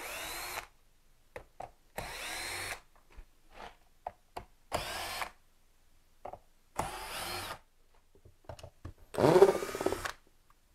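Cordless drill-driver backing the screws out of the melamine formwork on a concrete worktop's edge. It runs in five short bursts of under a second each, its motor spinning up at the start of each, with small clicks and taps between them.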